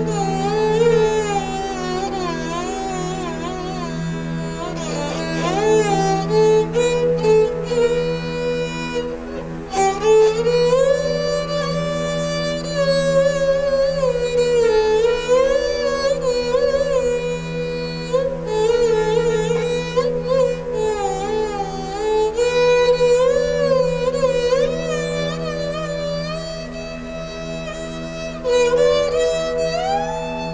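Esraj, a bowed Indian string instrument, playing a slow raga-based melody that glides between notes, accompanied by a Roland XP-30 synthesizer keyboard holding steady low notes underneath.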